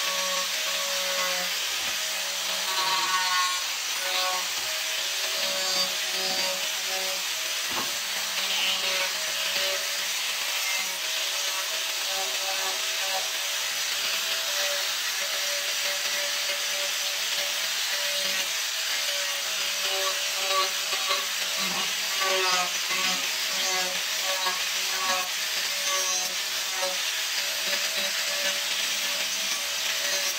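Angle grinder running steadily, its abrasive disc grinding and sanding the edges of a wooden cut-out: a constant motor whine under the rasp of wood being worn away.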